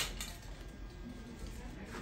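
A sharp click at the very start with a weaker one just after, then low room hum with faint voices.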